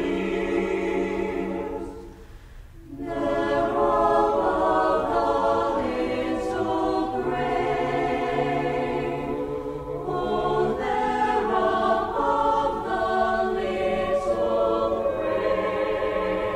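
Mixed SATB choir singing a cappella in held chords. The sound thins briefly about two seconds in, then the full voices come back in.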